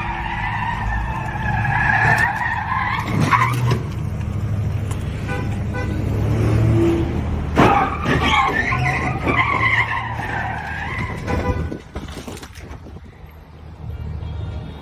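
Tires squealing as cars spin donuts and slide in tire smoke, with engine rumble underneath. There are two long, wavering squeals: the first fades about three and a half seconds in, and the second runs from about eight to eleven seconds in.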